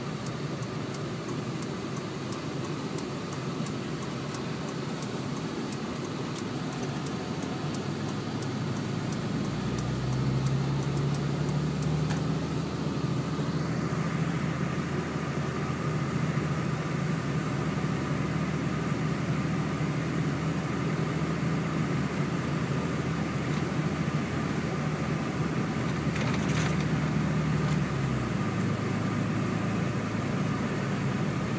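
A 2007 Dodge in four-wheel drive on snowy roads, heard from inside the cab: steady engine and road noise. The engine note steps up about ten seconds in, holds, and falls back near the end.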